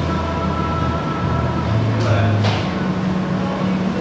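Workshop background noise: a steady low hum under a haze of room noise, with a short sweeping whoosh about two seconds in.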